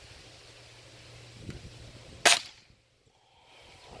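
A .22 Norica Titan pellet rifle fires a single shot about two seconds in: one short, sharp crack.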